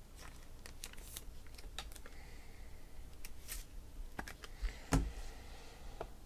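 Faint clicks and light taps of trading cards and their packaging being handled by hand, with a slightly louder knock about five seconds in.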